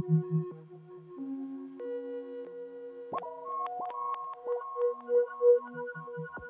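Modular synthesizer music: sparse held electronic tones that step between pitches, with a cluster of clicks about halfway through and a short note pulsing about three times a second near the end.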